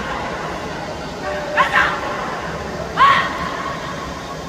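Short, high-pitched yelping cries, a pair about one and a half seconds in and a louder one about three seconds in, over a steady murmur of background noise.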